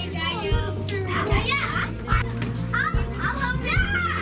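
A crowd of young children chattering and calling out together, with indistinct overlapping voices, over background music with held low notes.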